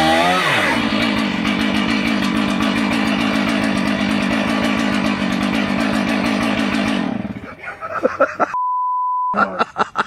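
Two-stroke chainsaw running steadily at high revs, then cutting off about seven seconds in. Near the end, a short single-pitch censor bleep.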